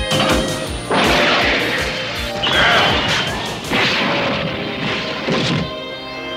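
Cartoon sound effects of metal vehicles slamming and crashing together, several loud crashes a second or so apart, with an action music score underneath.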